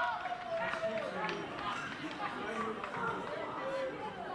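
Several voices of young footballers shouting and calling out just after a goal, one long held shout at the start and other calls overlapping after it.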